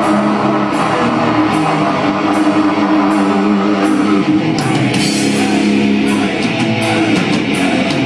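A live extreme metal band playing loud: heavily distorted guitars and bass over drums, with cymbals struck again and again.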